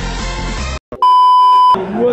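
Background pop music that cuts off abruptly partway through, then after a moment of silence a single loud, steady electronic beep lasting under a second. Men's voices start right after the beep.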